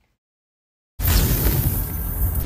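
Dead silence for about a second, then a sudden loud crashing, shattering sound effect with a deep rumble underneath, which keeps going.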